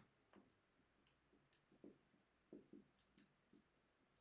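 Faint squeaks and light taps of a dry-erase marker on a whiteboard, in short irregular strokes as handwriting goes on.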